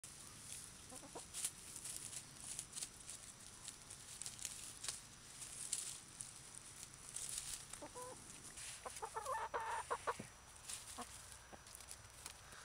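Chickens clucking softly as they forage, pecking and scratching through grass and dry leaves with short rustles throughout; a quick run of clucks comes about nine seconds in.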